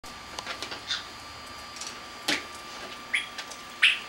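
Pet parrots making a few scattered short chirps and clicks, the loudest one just before the end.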